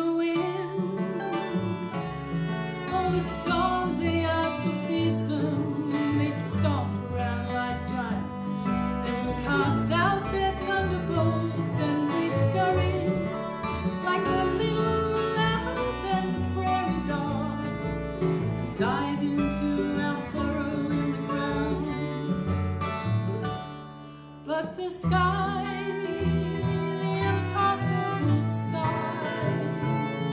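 Live acoustic folk band playing a song: strummed acoustic guitar and mandolin over low bass notes, with a woman singing lead. The music drops briefly about three-quarters of the way through, then picks up again.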